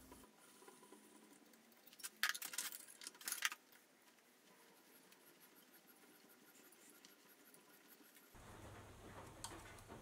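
Hand tap being turned with a tap wrench to thread a screw hole. Two short bursts of faint scratchy clicking come about two and three seconds in, with near silence around them.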